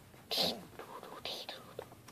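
A child whispering, two short hushed bursts with hissing 's' sounds.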